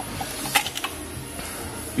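A few light clicks and knocks of hands working an ignition coil loose from the top of a BMW E36 engine.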